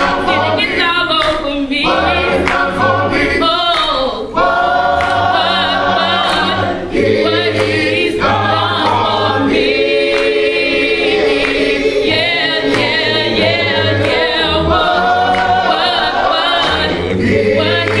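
Small gospel choir singing in harmony into microphones, with low held notes underneath that change every second or two.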